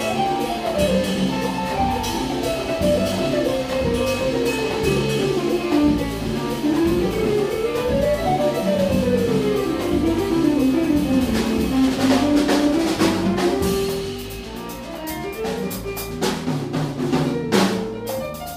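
Latin jazz quintet playing: Gretsch drum kit, congas, electric bass, keyboard piano and electric guitar. A single melodic line runs up and down in quick scale-like phrases over the bass and drums. A flurry of drum and cymbal hits comes a little past the middle, the band then drops back a little, and a loud drum accent lands near the end.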